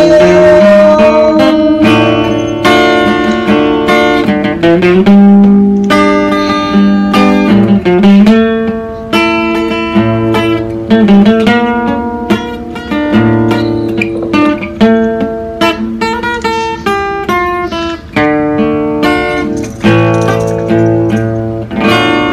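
Steel-string acoustic guitar played solo with no singing: a picked melody line over bass notes, each note ringing and dying away, with strummed chords near the end.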